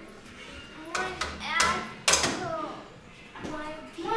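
A young girl's voice: a few short, loud vocal outbursts about a second and two seconds in, with laughter, then quieter voice near the end.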